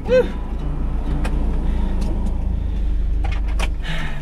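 Low, steady engine rumble heard from inside a van's cab, with a few light clicks of handling in the cab.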